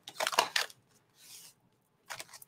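Clear plastic stamp sheet crinkling as it is handled: a few short crackles in the first half second, then a fainter rustle.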